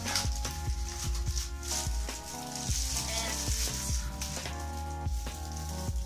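Plastic packaging wrap crinkling as items are handled and pulled from a cardboard box, over background music with sustained notes.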